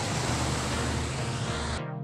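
Steady rushing noise of surf and wind on the beach, with music faintly underneath. Near the end an electronic music track cuts in, with sharp beats about two a second.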